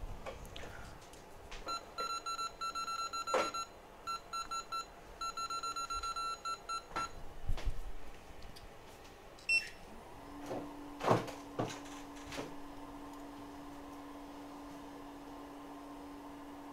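Rapid short electronic beeps from repair-bench equipment in three runs between about two and seven seconds in, with a few tool clicks. From about ten seconds in, a steady hum of a hot-air rework station's blower running to heat off a shorted capacitor.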